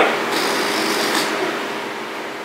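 Air hissing out of a latex balloon as it deflates, a steady hiss that slowly fades.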